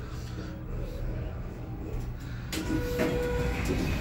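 Schindler hydraulic elevator car travelling down with a steady low rumble and hum. About two and a half seconds in the sound grows and brief steady tones come in.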